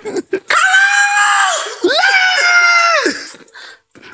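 Two long, high-pitched screams from a person's voice, each held for about a second and dropping in pitch as it breaks off.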